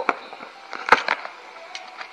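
Utility knife cutting through packing tape and a cardboard box, with scraping and tearing noise and one sharp knock about halfway through.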